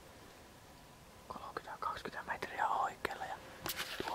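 Quiet for about a second, then a person whispering, with a couple of sharp clicks near the end.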